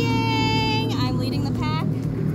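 A jet ski's engine running steadily under a woman's voice, which gives one long high-pitched call in the first second and then a few short voiced sounds.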